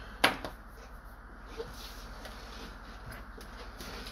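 A single sharp click about a quarter second in, then quiet room tone with a low steady hum.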